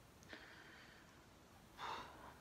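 Faint breathing from a person lying still: a soft breath about a third of a second in, then a louder sigh-like exhale near the end.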